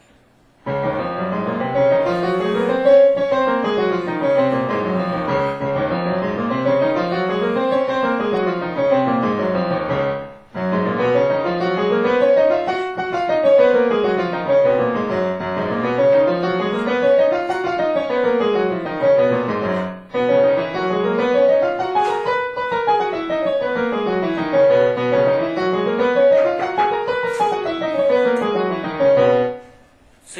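Digital piano playing major scales with both hands in parallel: D-flat, G-flat and C-flat major in turn. Each scale runs up and down twice, with a short break before each new key.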